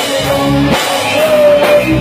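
Rock band playing live: electric guitars, bass guitar and drum kit, with sustained low notes and regular drum hits, as picked up by a cell phone's microphone in a rehearsal room.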